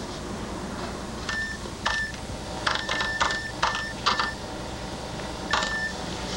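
A series of short electronic beeps with clicks, irregularly spaced and some in quick pairs, like keys being pressed on a beeping keypad.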